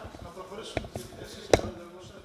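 Two sharp knocks, a lighter one under a second in and a louder one about three quarters of a second later, over a faint murmur of voices.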